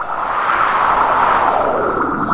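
An aircraft-like rushing noise effect at the opening of a music track, sweeping gently in pitch, with faint high chirps above it.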